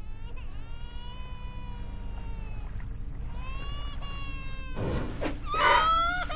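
High-pitched crying wails: one long drawn-out cry of about two and a half seconds, a shorter one after it, then a louder, ragged sobbing cry near the end.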